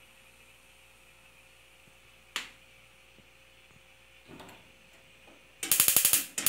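Electric spark igniter of an Esmaltec Ágata gas stove. A single click comes about two and a half seconds in, then a rapid run of loud clicks near the end, while the oven burner fails to light.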